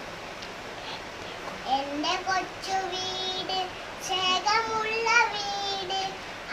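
A young girl singing solo without accompaniment, in long held notes; she starts about a second and a half in.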